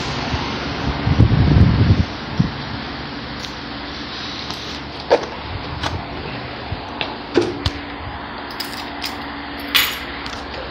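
Steady ventilation hum with phone handling noise: a low rumble about a second in, then scattered light knocks and clicks. Near the end comes a short clatter, as of a plastic jug and keys being set down on a metal mesh bench.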